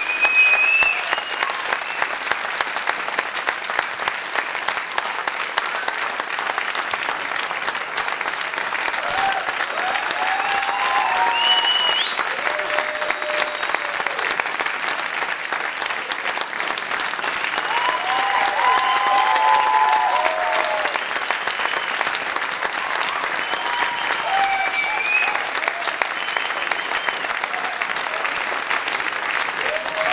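A large theatre audience applauding steadily, with a few voices calling out over the clapping.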